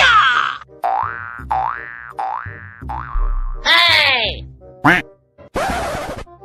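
Cartoon comedy sound effects: four springy boings about 0.7 s apart, each dipping and then rising in pitch. They are followed by a falling glide and a short hiss near the end.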